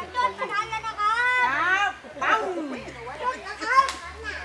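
Children's voices calling out with rising and falling pitch, then near the end one sharp bang from a firecracker set off inside the hollow shrine.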